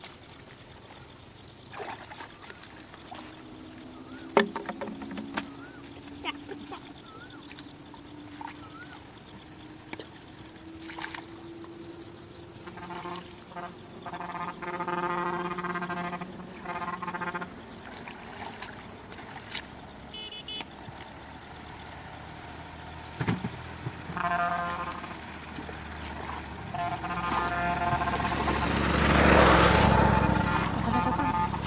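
Water sloshing and splashing as someone wades through a shallow muddy stream, growing loudest near the end as the wader comes close. A faint high chirp repeats steadily throughout, with scattered clicks and several drawn-out pitched calls in the middle and toward the end.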